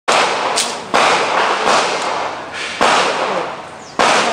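Pistol gunshots: three loud reports about a second apart, with a fainter one between the second and third, each trailing off in a long echo.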